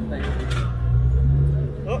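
Lowered Honda Civic sedan's engine and exhaust running at low revs as it rolls slowly past, a steady low drone that climbs slightly in pitch about a second in. Spectators' voices are heard over it.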